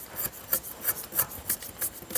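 A curved knife scraping bark off the trunk of a kanchanara (Bauhinia variegata) tree, in short repeated rasping strokes about three a second.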